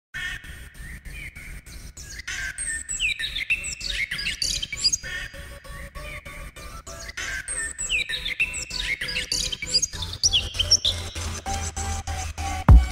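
Intro of a hip-hop track: a recording of birds chirping, the same stretch of birdsong repeating about every five seconds, over a low bass that swells near the end.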